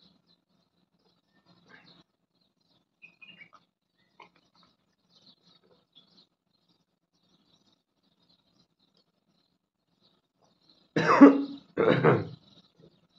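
A man coughs twice near the end, two short loud coughs in quick succession, while drinking water from a glass. Before that there are only a few faint small sounds.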